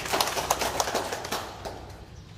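A small group of people clapping, a short round of applause that thins out and fades away about a second and a half in.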